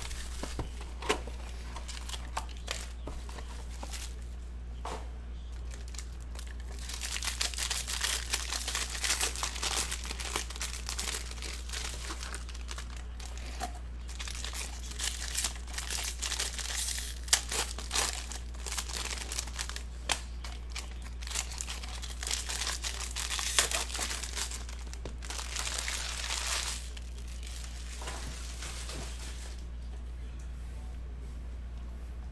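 Plastic wrappers of 2019 Bowman Chrome baseball card boxes and packs being crumpled and torn open by hand: sparse crinkles at first, then dense crackling with sharp crinkles for most of the stretch, easing off near the end. A steady low hum runs underneath.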